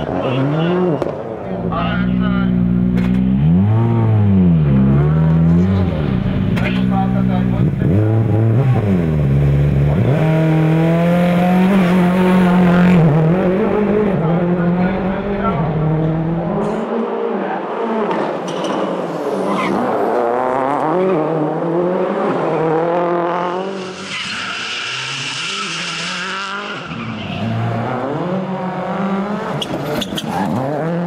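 A Ford Focus RS WRC rally car's turbocharged four-cylinder engine revving hard, its pitch climbing and dropping again and again through gear changes and lifts, with tyres squealing as the car slides through tight turns. Partway through the engine sounds more distant, and a burst of hiss comes near the end.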